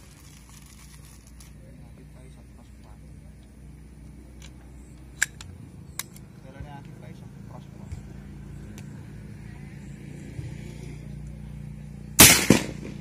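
Steady low hum of a motor vehicle's engine, slowly growing louder, with two sharp clicks about five and six seconds in.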